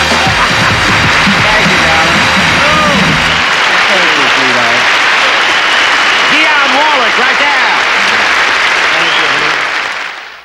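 Studio audience applauding and cheering at the end of a song. The band's last held chord runs underneath and stops about three and a half seconds in, leaving applause and shouts.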